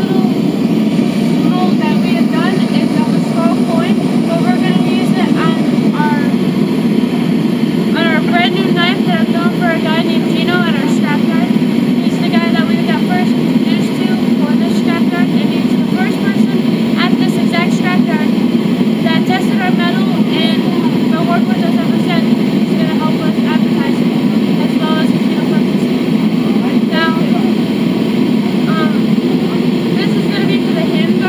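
Steady low mechanical roar throughout, with short high chirps scattered over it.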